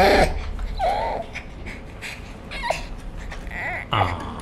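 A young child whimpering: a loud wavering cry breaks off at the start, then a few short whimpers follow.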